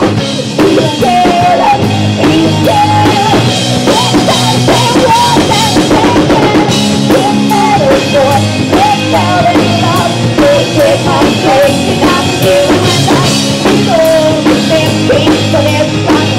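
Pop-rock band playing live and loud: drum kit with kick and snare keeping a steady beat under bass and electric guitars, with a wavering melody line over the top.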